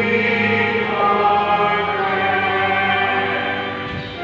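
Choir singing a hymn in long held notes during Mass.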